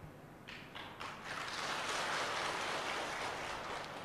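An audience applauding, starting up about a second in, holding steady, and thinning out near the end.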